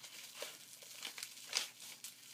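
Brown paper crinkling and rustling as a strip is wrapped in a spiral around a wand, with a couple of sharper crinkles about half a second in and again near the end.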